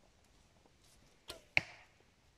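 A traditional wooden bow being shot: near the end, two sharp snaps about a third of a second apart, the second louder with a brief ring.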